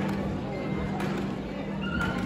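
A dog whining faintly in thin high tones over the murmur of a crowded hall and a steady low hum.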